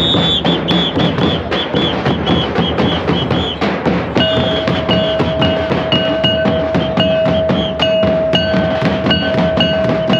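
Tribal folk drummers playing double-headed barrel drums in a fast, driving rhythm for a dance. About four seconds in, a steady high held tone joins the drumming.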